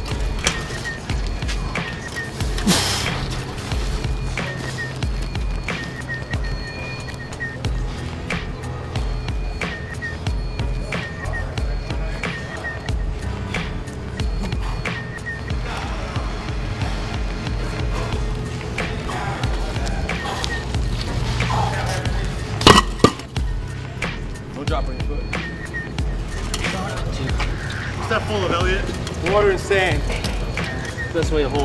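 Steel beer keg knocking against asphalt: one sharp metallic knock about three seconds in and a double knock a little past two-thirds of the way through, over a steady low rumble.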